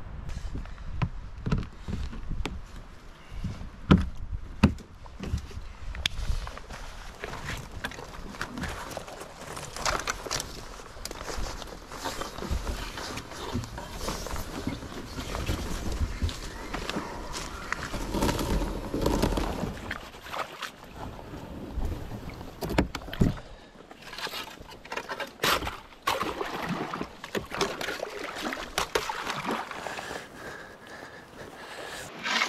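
A loaded sea kayak being packed and moved by hand: irregular knocks and thumps of gear and hull, with rustling and scraping through dry leaves and brush.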